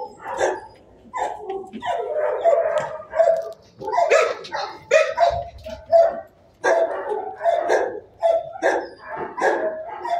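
Shelter dogs barking over and over, the barks overlapping with almost no pause.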